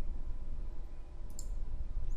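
A single sharp click about one and a half seconds in, over a steady low hum: the click of the computer input used to advance a presentation slide.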